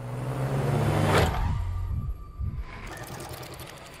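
A car speeding past in a road tunnel, its engine and rush of air swelling to a peak about a second in and then fading away.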